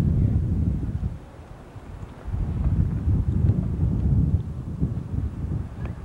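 Wind buffeting the camcorder's microphone on a moving motorcycle, a low rough rumble. It drops away for about a second shortly after the start, then comes back.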